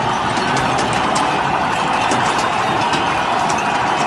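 Steady din of a very large protesting crowd, scattered with many short, sharp clicks and knocks.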